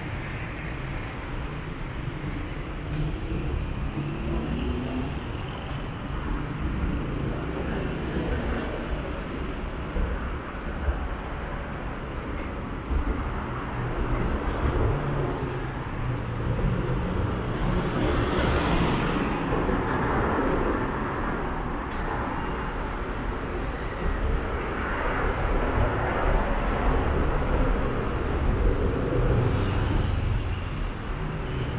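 City traffic noise: a steady low rumble of road traffic with vehicles passing now and then, the loudest pass about two-thirds of the way through.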